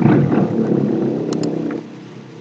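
A man's voice held on a long, low, drawn-out sound, like a hesitation "uhh" or a hum, fading out near the end. Two light computer-keyboard clicks come about one and a half seconds in.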